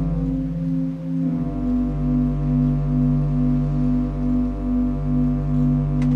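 Organ playing sustained chords with a pulsing tremolo, about three pulses a second; the chord changes about a second in and the new chord is held.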